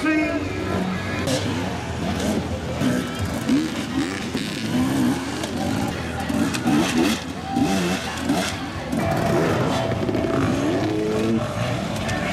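Enduro motorcycle engines revving up and down again and again, their pitch rising and falling in quick swells as riders work the throttle over rough ground.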